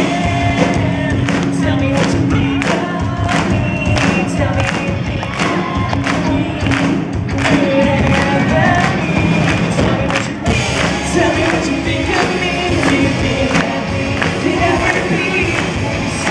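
A live pop band performance: a male singer's voice over a steady beat of about two strokes a second.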